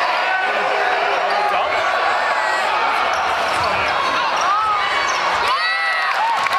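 A basketball being dribbled on a gym's hardwood floor, over steady crowd chatter. Short high sneaker squeaks come mostly in the last second and a half.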